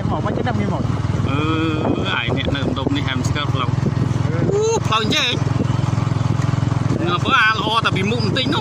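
Small motorcycle engine running steadily while riding along a dirt track.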